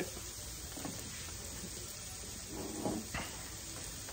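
Onions sautéing in a frying pan, a steady sizzle. A brief soft knock of handling comes about three seconds in.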